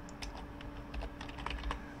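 Computer keyboard being typed on: a scattered run of light key clicks as a short word is entered into a text field.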